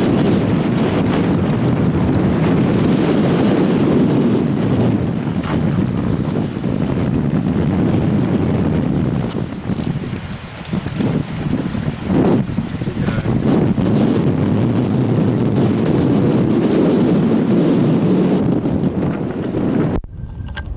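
Wind buffeting the microphone outdoors, a loud, uneven rumbling that eases briefly about halfway through.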